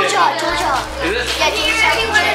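Several children talking and calling out at once, excited chatter over background music.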